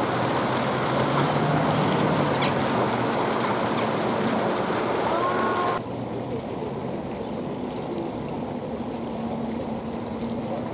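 Fountain jets splashing and rushing steadily into a shallow basin. About six seconds in the sound cuts abruptly to a quieter, duller rush, and a short gliding bird call is heard just before the change.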